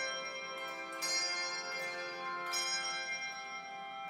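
Handbell choir ringing, a new chord struck about every second and each left ringing with a long decay, with a flute playing along.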